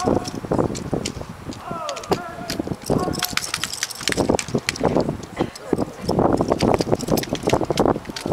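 Armed drill team handling drill rifles: a rapid run of sharp slaps and clacks as the rifles are spun, caught and struck in the hands. The clatter is thickest a couple of seconds in.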